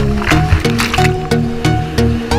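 Electronic background music with a steady beat of about three strokes a second and held synth notes.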